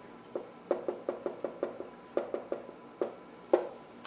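Whiteboard marker writing on a whiteboard: a quick, irregular run of short taps as the pen tip strikes and lifts off the board stroke by stroke.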